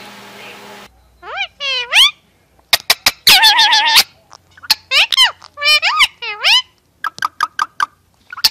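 Rose-ringed (Indian ringneck) parakeet vocalizing close up: a series of high-pitched calls that sweep up and down, one longer harsh call about three seconds in, and runs of sharp clicks, the last of them near the end.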